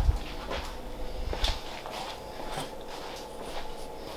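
Gloved hands handling a plastic egg box of vermiculite: scattered light clicks, knocks and rustles of plastic, with a dull knock right at the start.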